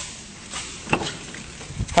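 A pickup truck's door being opened: a short click about halfway through, then a low thump near the end as the door comes open.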